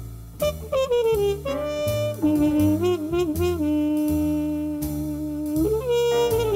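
Small jazz group playing a slow tune: a trumpet carries the melody, bending into one long held note with vibrato through the middle, over plucked double bass, piano and light drums.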